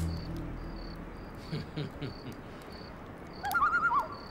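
Crickets chirping in short, evenly spaced pulses, with the tail of a low music cue fading out at the start. Near the end a brief warbling high tone sounds.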